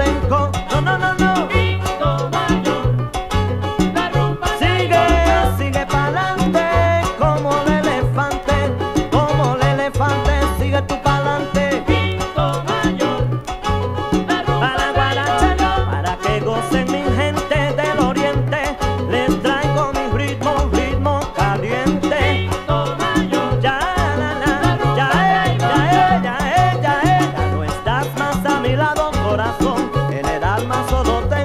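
Salsa band playing an instrumental stretch without lead vocals: a repeating bass line and Latin percussion under melodic instruments.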